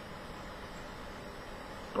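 A steady, even background hum with no change through the pause.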